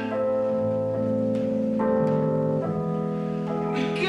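Casio digital keyboard playing sustained piano chords with no voice over them, moving to a new chord about every second.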